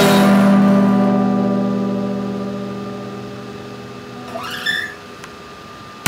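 Acoustic guitar's final strummed chord ringing out and slowly dying away. A brief, rising squeak-like sound comes about four and a half seconds in.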